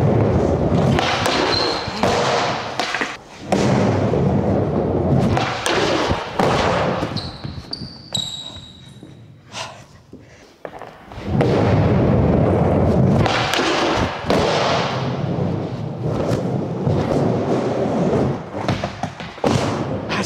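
Skateboard wheels rolling over skatepark ramps, with thuds of the board hitting and grinding a ledge during tricks. There is a quieter stretch about halfway through before the rolling starts again.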